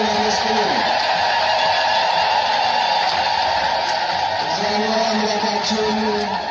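Large crowd singing a Timkat hymn (mezmur) together: a sung phrase ends about a second in and the next begins near the end, with steady crowd noise between.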